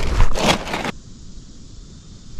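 A brief scraping rustle of a shirt sleeve brushing against the camera microphone in the first second, then quieter.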